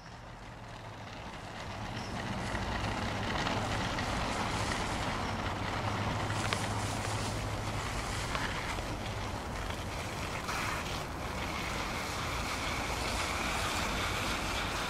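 Small plastic wheels of a child's scooter rolling down a paved slope: a steady rolling noise that grows louder over the first couple of seconds as the rider nears, then holds.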